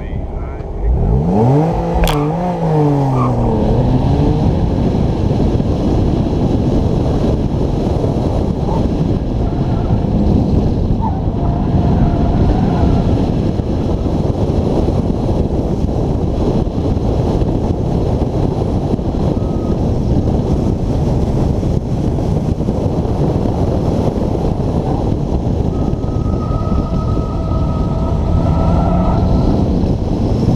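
2010 Porsche Boxster S's flat-six engine revving hard as the car launches about a second in, the pitch climbing, dipping at a shift and climbing again. After that comes a loud, steady, noisy rush as the car is driven hard through the course.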